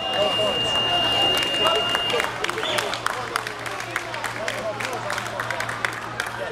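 A match timer's steady, high electronic tone, held until about two seconds in and then cutting off, marking the end of the match. Scattered applause and crowd voices follow.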